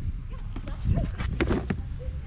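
Indistinct voices with a low rumble on the microphone, and a brief burst of sharp clicks and rustling about one and a half seconds in.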